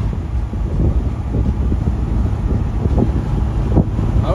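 Steady low road and wind rumble of a car cruising at motorway speed, with wind buffeting the microphone.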